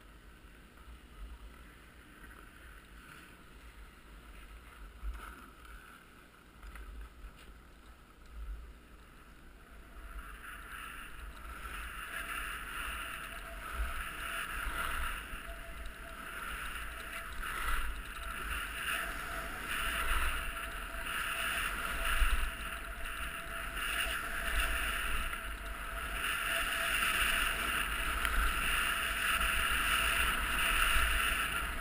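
Rush of air over a helmet-mounted camera's microphone and the scraping hiss of edges sliding on firm, hard-packed piste during a downhill run. It grows clearly louder about ten seconds in as the descent picks up speed, swelling and easing with each turn.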